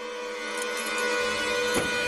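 Suspenseful film score: a sustained held chord swelling steadily louder, with a hiss building beneath it and a brief tick near the end.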